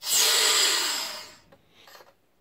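Air hissing back into an evacuated vacuum chamber as its pressure is released. The hiss starts suddenly and fades away over about a second and a half as the pressure evens out.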